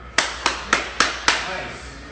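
Five sharp hand claps in an even beat, about a quarter second apart.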